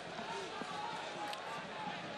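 Steady stadium crowd noise from a football match broadcast, an even wash of sound with no single event standing out.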